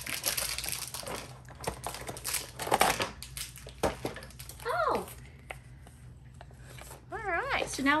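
Plastic and paper toy packaging crinkling and crackling as it is handled, busiest in the first three seconds, then a few scattered crackles.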